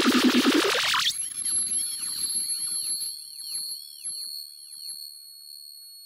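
Electronic breakcore/noise music: a loud, dense noisy passage cuts off about a second in, leaving a few steady high-pitched tones with repeated swooping sweeps that slowly fade away.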